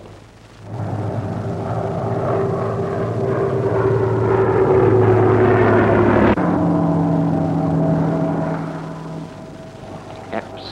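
Propeller fighter plane's piston engine droning on an old film soundtrack, swelling louder over several seconds. About six seconds in it cuts off abruptly to a lower, steadier engine note, which fades away near the end.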